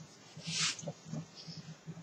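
A short, quiet breath of air about half a second in, from a cigarette smoker between drags, followed by a few faint ticks.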